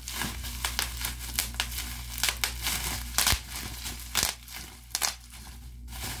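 Plastic bubble wrap crinkling as it is squeezed and twisted by hand, with many irregular sharp pops of bubbles bursting.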